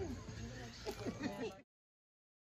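Faint background voices and chatter over a low hum, cutting off suddenly to dead silence about one and a half seconds in.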